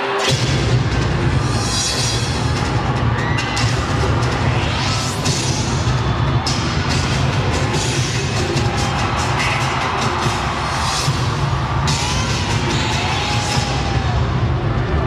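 Cheerdance routine music played loud through an arena sound system: a heavy electronic beat with sharp percussive hits and a rising whoosh, the section starting sharply at the opening.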